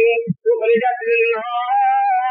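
A man's voice chanting melodically, high-pitched, in long held notes that slide in pitch, with a brief breath pause a little under half a second in.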